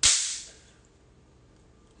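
A single sudden, sharp burst of hissing noise, close to the microphone, fading out within about half a second.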